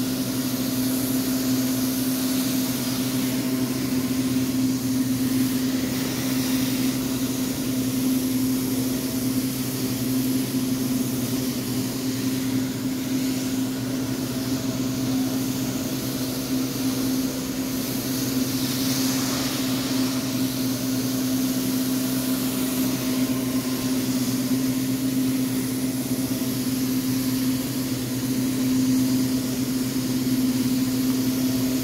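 Zipper SS Super Spinner rotary extraction wand working over carpet on a truckmount carpet-cleaning system: a steady machine hum of constant pitch under a continuous rush of vacuum suction, with no let-up.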